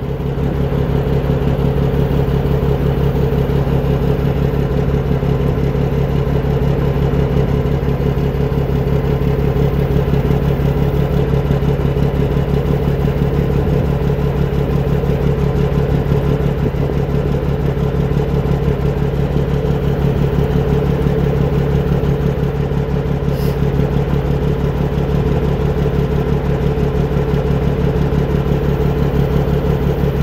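Diesel grain truck engine idling steadily, loud and close, heard from right beside its exhaust.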